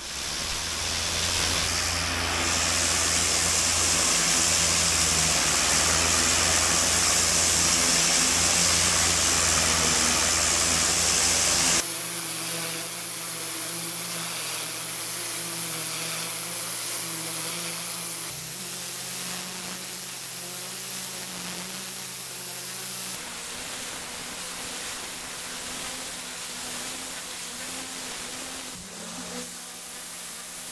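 Pressure washer lance jet blasting wet stone paving slabs: a loud, steady hiss of water spray on stone with a steady low hum underneath. The hiss drops abruptly about twelve seconds in and shifts a couple more times after.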